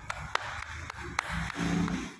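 A few sharp single clicks over the hum of a large room, with a short voice near the end.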